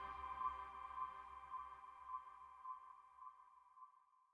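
The track's closing synth chord fading out: a held tone with overtones that slowly dies away, its low bass dropping out a little past halfway.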